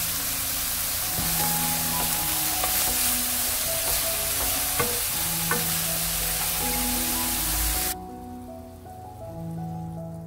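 Julienned burdock root sizzling in oil in a frying pan as it is stir-fried with a wooden spatula, with a few light clicks. The sizzle cuts off abruptly about eight seconds in.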